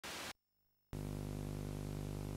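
A brief burst of hiss, a short silence, then from about a second in a steady low electrical hum with a buzzy stack of overtones.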